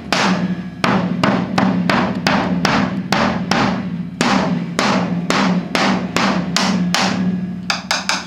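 Drum kit played in a steady rhythm of about three strokes a second, with the stick laid across the snare drum giving a woody rim click over a low, steady drum ring.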